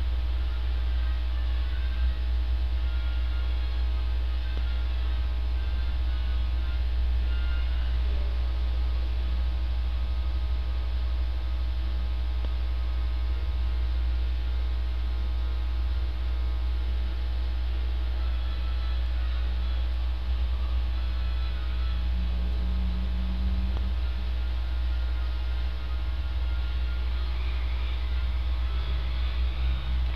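A steady low hum runs unchanged throughout, with faint thin tones above it.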